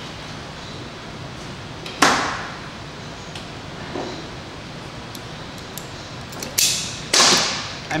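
Wire stripper working on a thin stranded wire: one sharp snap about two seconds in, a faint tick, then two more quick snaps close together near the end as the insulation is cut and pulled off.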